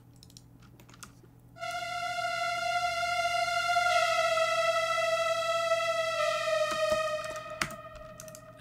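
A solo synthesizer lead plays a slow melody of three long held notes stepping down, with a slight downward pitch bend, starting about a second and a half in and fading away near the end.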